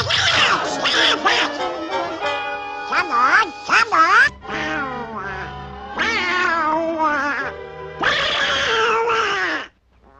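Donald Duck's squawking, garbled voice in a rage, over an orchestral cartoon score. The clips change abruptly about four and eight seconds in, and there is a brief drop-out just before the end.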